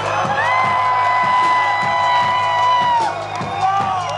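Live hip-hop concert music with a regular low beat, over which one long high note slides up about half a second in, is held, and falls away after about three seconds.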